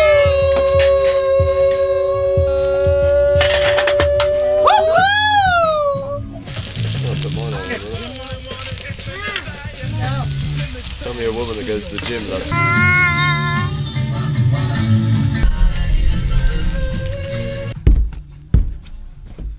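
A long held musical note that rises and falls at its end, then onions sizzling as they fry in a pan on a gas camping stove for about six seconds, then music again.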